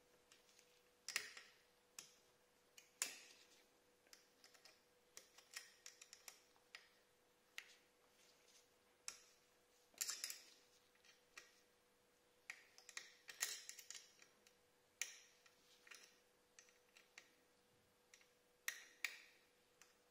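Sporadic light clicks, taps and short scrapes of small metal parts being handled by gloved hands at a motorcycle exhaust outlet: an M4 bolt and nut being worked to crimp a rivet nut.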